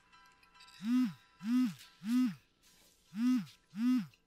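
Mobile phone ringing: a ringtone of short pitched notes, each swooping up and then down, about 0.6 s apart, sounding in two groups of three with a short gap between them.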